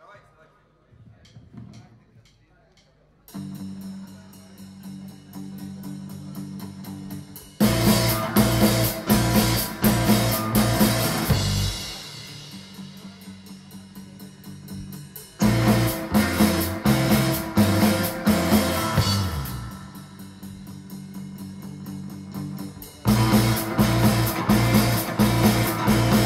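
Live rock trio of electric guitar, electric bass and drum kit. After about three seconds of faint room noise and a few light clicks, the band comes in and plays, switching between quieter passages and loud full-band sections three times.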